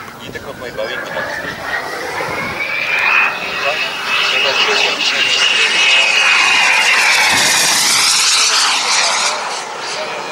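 Kingtech turbine of a Pilot Kit Predator model jet making a low pass. A high whine rises in pitch and loudness as the jet approaches, holds loudest through the middle, then dips slightly in pitch as it goes by.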